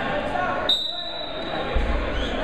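A single short, high whistle blast, most likely the referee's whistle, about two-thirds of a second in, over the chatter of a gym crowd. A low thump comes near the end.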